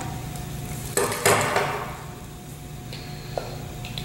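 Craft supplies being picked up and set down on a table: a sharp knock and clatter about a second in, then quieter handling with a small click near the end.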